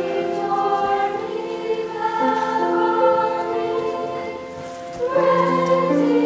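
A seventh-grade school choir singing long held notes with piano accompaniment. The singing softens about four seconds in, then swells again near the end.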